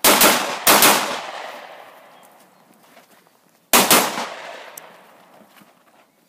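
Handgun shots fired in quick pairs: two pairs within the first second, then after a pause of about three seconds another pair, each shot echoing and fading out across the range.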